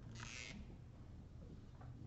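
Quiet classroom room tone: a low steady hum, with one short hiss of about half a second near the start.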